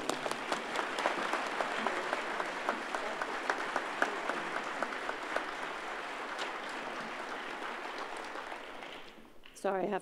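Audience applauding, a dense patter of many hands that slowly weakens and dies away after about nine seconds.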